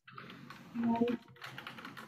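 A run of quick, light clicks, with a short snatch of voice about a second in.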